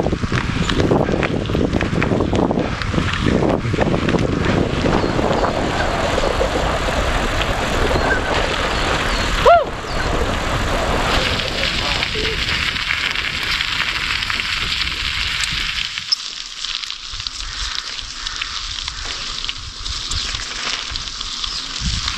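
Wind rushing over the microphone, with tyre noise, as a bicycle rolls downhill on a paved road. About halfway there is one brief high squeak. Near the end the low rumble drops away, leaving a quieter hiss.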